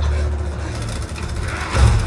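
Action-film soundtrack played back through a JBL Bar 1000 Dolby Atmos soundbar: a deep, steady low rumble under lighter effects, swelling louder near the end.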